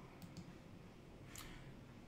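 Near silence with a few faint clicks, the clearest about one and a half seconds in.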